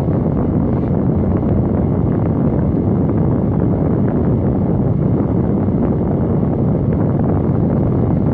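Steady car-cabin noise: an even low rumble with hiss, no pauses or changes.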